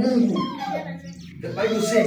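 A man preaching in an animated voice.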